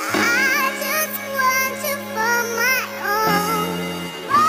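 Background song: a high-pitched singing voice with wavering melodic lines over sustained accompaniment, whose bass note changes a little past three seconds in.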